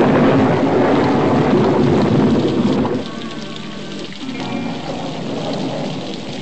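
Thunderstorm sound effect: a loud rumble of thunder with heavy rain, dying down about halfway into steady rainfall with soft music underneath.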